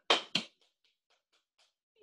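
Hands patting on the lap: two sharp pats in the first half-second, followed by a run of much fainter, quicker taps.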